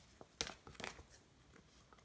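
Scissors cutting through a clear plastic sleeve: a few faint, short snips with light crinkling of the plastic.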